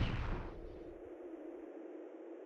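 The echoing tail of a gunshot sound effect for a fired rubber bullet, dying away over the first half second. It leaves a faint steady drone.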